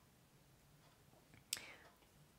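Near silence: room tone, with one brief faint sharp sound about one and a half seconds in.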